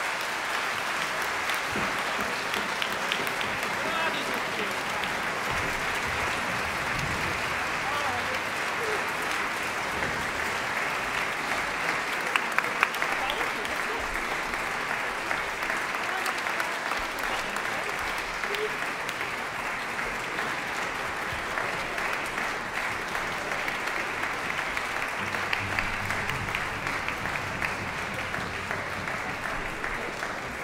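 Audience applause, a dense steady clapping with a few louder claps about twelve to thirteen seconds in.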